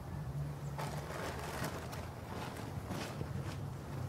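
Rustling and handling of gear as a fabric backpack is rummaged through, in a few short scuffling spells over a low steady hum.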